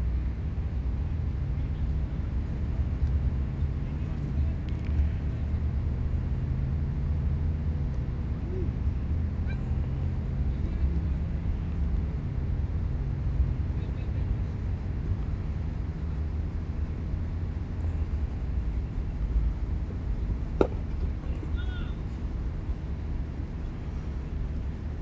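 Outdoor ambience at a cricket ground: a steady low rumble with faint distant voices, and one sharp knock about three-quarters of the way through.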